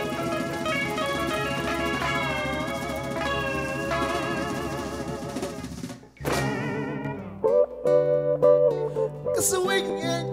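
A live Garifuna band with acoustic and electric guitars, bass and a hand drum. About six seconds in, the music cuts off abruptly and a different piece of music starts, with a steady bass line and sharp beats.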